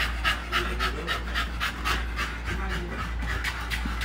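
Exotic bully dog panting rapidly, about four breaths a second.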